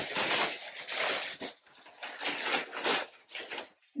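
Plastic bag and garment packaging rustling and crinkling as it is handled, in uneven bursts with a couple of short pauses.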